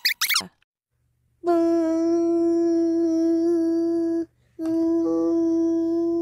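A steady hum held at one pitch, sounding twice: almost three seconds, a brief break, then about two seconds more.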